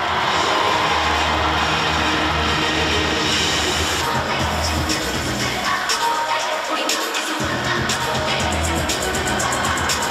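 Music with a steady bass line, which drops out briefly about six seconds in and then returns.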